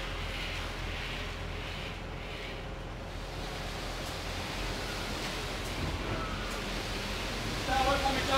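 A steady low rumble with hiss runs throughout. Over it come soft, repeated swishes of a bull float being pushed and pulled across freshly poured wet concrete, most noticeable in the first few seconds. A voice starts just before the end.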